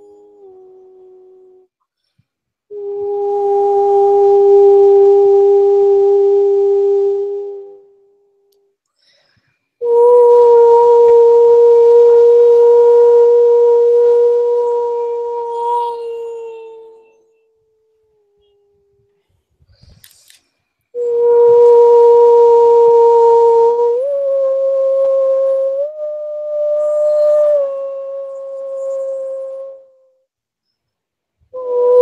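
A woman's voice doing channeled vocal toning: three long held notes with silent breaths between them, after a short note at the start. The second note slides down as it fades, and the last steps up and then back down in pitch.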